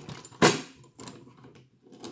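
Handling noise from a die-cast Siku model three-axle tipper trailer on a wooden table as its wheels and axles are pressed to check the suspension. A sharp clack comes about half a second in, then a lighter click.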